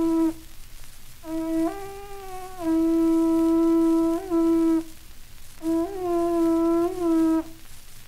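Ancient Mexican wind instrument on an old 78 rpm record, blowing long held notes at one low pitch with brief upward slides. The notes come in phrases of a few seconds with short gaps between, over faint record surface hiss.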